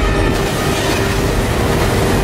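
Storm at sea: a loud, dense rush of wind and breaking waves over a fishing boat, with a low rumble beneath. The hiss grows brighter about a third of a second in.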